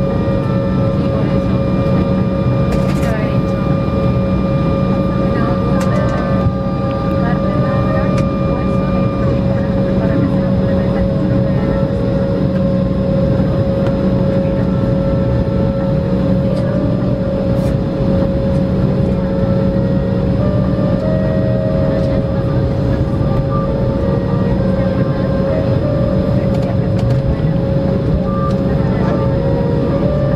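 Jet airliner's engines running at taxi power, heard from inside the cabin after landing: a steady wash of noise with several steady whining tones over it.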